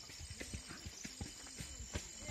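Footsteps on a dirt path through a rice paddy, a quick, irregular patter of soft knocks, with a faint, steady high insect drone behind.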